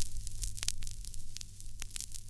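Vinyl surface noise from a stylus tracking the lead-in groove of a 45 rpm single: a steady hiss and low hum, with scattered clicks and pops.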